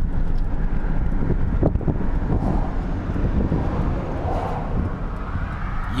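Steady road and engine rumble of a moving car heard from inside the cabin, with wind noise on the microphone.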